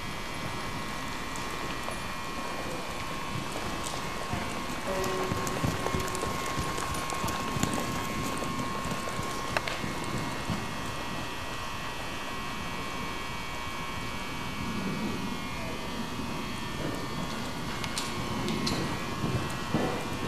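Muffled hoofbeats of a Welsh pony cantering on the soft sand footing of an indoor arena, under a steady hiss and a faint steady hum.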